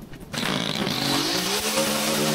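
Stihl gas string trimmer engine starting up abruptly about a third of a second in, revving up over the next second and then running steadily at high speed while cutting grass. A few light clicks come just before it.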